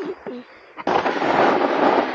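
Snowboards scraping and skidding over packed snow, starting suddenly about a second in and staying loud. The boards are sliding on their heel edges.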